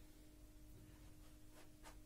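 Near silence: room tone with a faint steady hum. Near the end come two faint short strokes of a marker on a whiteboard.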